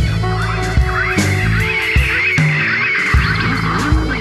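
Psychedelic rock track: bass notes and drum hits continue under a dense layer of high, rapidly wavering sounds. The wavering layer starts just after the beginning and fades near the end.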